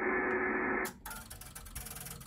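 Band noise from the Kenwood TS-990 transceiver's speaker on 80 m. About a second in it cuts out and gives way to a rapid run of faint clicks, the radio's internal automatic antenna tuner working through its settings.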